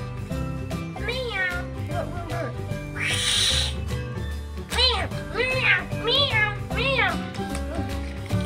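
A cat meowing repeatedly, a string of short rising-and-falling meows, most of them between about five and seven seconds in, over background music with a steady low bass. A brief rush of hissy noise about three seconds in.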